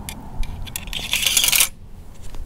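The musket's steel ramrod clinks against the barrel several times, then scrapes along it for about half a second, starting about a second in.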